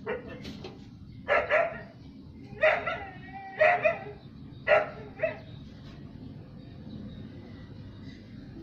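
A dog barking in short loud barks, singly and in pairs, about seven in all over the first five seconds, then falling silent.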